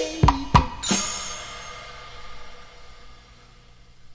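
Drums ending a song: three quick strikes, then a final crash a little under a second in that rings out and fades away over the next few seconds.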